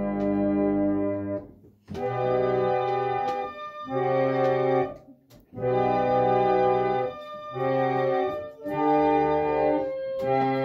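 A reconditioned, roughly 120-year-old reed pump organ playing a slow piece in held chords that change about once a second. The sound breaks off briefly twice, about two and five seconds in, between phrases.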